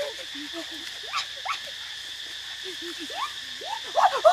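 Steady high drone of insects, with scattered short pitched calls that glide up or down.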